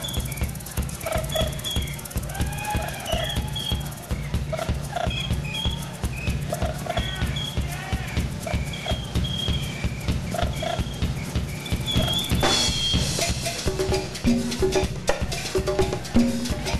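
Live rock band playing an instrumental passage: a steady drum-kit beat with bass drum and snare under short high-pitched melodic notes. A cymbal crash comes about twelve seconds in, and lower notes join near the end.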